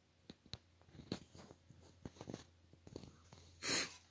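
Faint scattered clicks and taps of hands handling test leads and gear, then a short sharp breath near the end.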